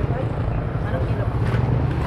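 A steady low engine hum under general background noise, with no clear speech.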